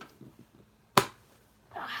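A single sharp click about a second in, against quiet room tone.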